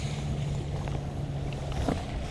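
Steady low hum of a bass boat's motor, with wind noise on the microphone.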